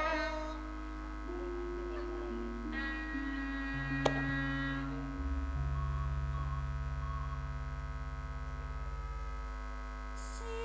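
Live campursari band playing an instrumental passage: long held keyboard notes over a low bass line that steps from note to note. There is one sharp click about four seconds in.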